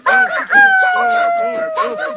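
A man imitating a rooster's crow through cupped hands: a short cry, then a long held call that slowly falls in pitch, over other men's rapid repeated vocal chant.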